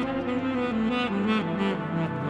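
Instrumental music led by a saxophone, its melody stepping down in pitch.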